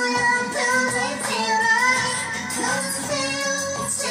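A woman singing a pop song into a handheld microphone over a backing track, karaoke style, with held notes that bend in pitch.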